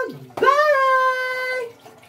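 A woman's high-pitched, sing-song goodbye call, drawn out and held for over a second, with the tail of a similar call at the start. It echoes off the tiled bathroom walls.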